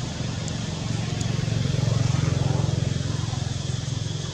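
A low engine hum of a passing motor vehicle, swelling to its loudest about two seconds in and then fading.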